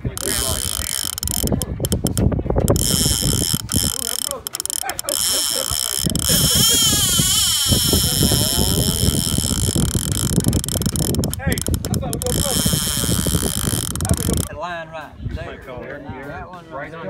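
Conventional fishing reel ratcheting steadily as line is pulled off the spool by a running fish. The clicking stops shortly before the end.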